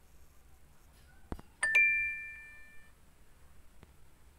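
A quiz game's correct-answer chime: two quick notes, the second higher, ringing out and fading over about a second, just after a sharp click.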